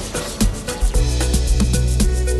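Music with a steady beat and deep bass; a sustained bass line comes in about a second in.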